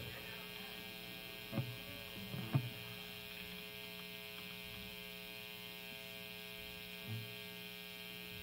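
Steady, low-level electrical mains hum from the stage amplifiers and PA between songs, with a few faint short noises.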